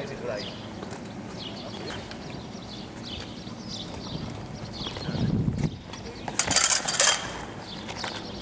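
Steel rapier blades knocking and clashing, with footwork on cobblestones as small scattered clicks. About six and a half seconds in comes the loudest part, a quick flurry of sharp clashes.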